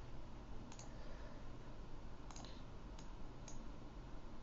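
About four faint computer mouse clicks, spaced a second or so apart, over a low steady hum.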